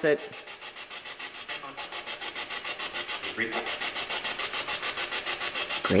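Spirit box radio sweeping through stations, played through a small speaker: a rapid, even pulsing of static, about eight chops a second, with a brief fragment of a voice about three and a half seconds in.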